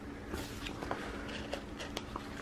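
Faint paper handling: soft rustles and a few light clicks as a hand moves over a planner page and picks up a sheet of stickers.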